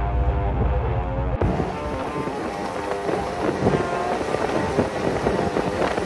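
Background music over snowmobile ride noise. A deep low rumble gives way, about a second and a half in, to the steady rushing noise of a snowmobile underway: engine and wind together.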